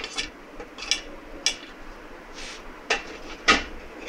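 About four light clicks and knocks of a kitchen utensil against a mixing bowl, spread over a few seconds, the last one the loudest.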